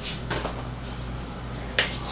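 Steady low electrical hum of the room, with a couple of soft footsteps as a person steps into place, then a short sharp noise just before speech begins near the end.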